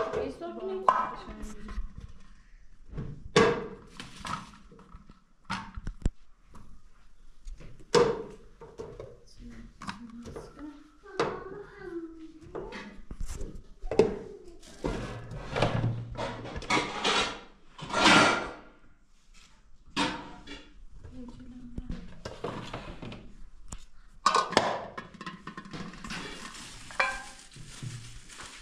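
Kitchen handling sounds: metal trays and a steel bowl knocking and clanking on a counter and food being taken from a refrigerator, a scattered series of knocks, thunks and scrapes, with brief talk in between.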